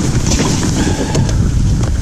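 Wind rumbling on the microphone on an open boat deck, with a few light knocks from handling on the deck.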